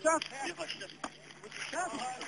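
People's voices calling out in short cries near the start and again near the end, with a single sharp knock about a second in.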